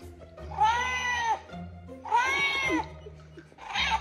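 Electronic toy kitten meowing: two long, high-pitched meows that rise and fall, each lasting under a second, then a short meow near the end, over background music.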